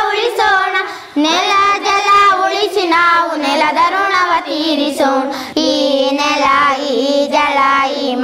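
A group of young boys singing a song together, holding long notes, with a short breath-break about a second in.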